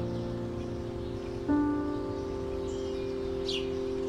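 Slow, soft background piano music: a chord struck about a second and a half in rings on and slowly fades. A single high chirp sweeps downward near the end.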